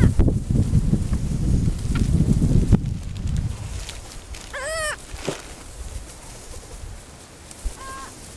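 A low rumble on the microphone over the first few seconds. A gull gives a short call at the very start, a longer rising-and-falling call about four and a half seconds in, and another brief call near the end.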